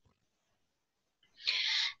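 Near silence for over a second, then a short, sharp in-breath by the woman presenting, just before she speaks again.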